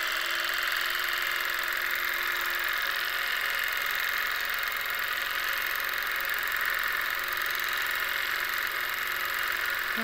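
Longarm quilting machine running steadily as it stitches free-motion through a quilt, an even mechanical whir.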